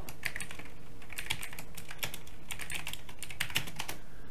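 Typing on a computer keyboard: quick runs of key clicks in several short bursts, densest in the second half.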